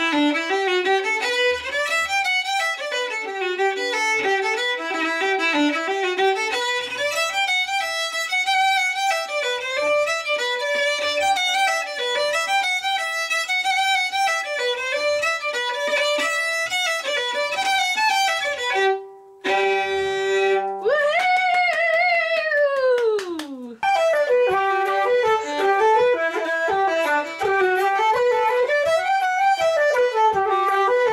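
A violin bowed in a fast tune of running notes. About two-thirds of the way through, the tune breaks for a short held note, then a long slide down in pitch, before the running notes resume.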